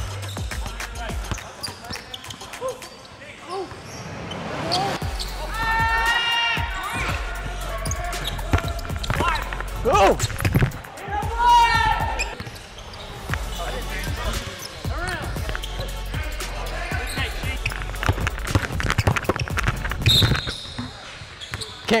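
A basketball being dribbled and bounced on a hardwood gym floor, with repeated short knocks through the play, under brief shouts from players.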